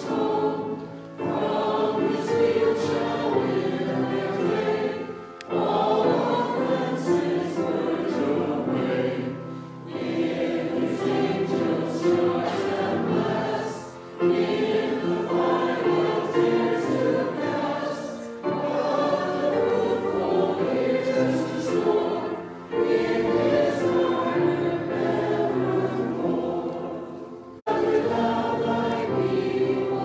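A congregation singing a hymn together, in phrases of about four seconds with short breaths between them. Near the end the singing breaks off abruptly, then starts again.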